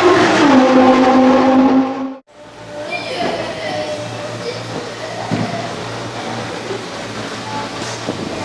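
Pagani Zonda F's 7.3-litre V12 engine running, its revs dropping and settling to a steady pitch in the first second. About two seconds in the sound cuts off abruptly, then returns quieter as a steady low engine hum.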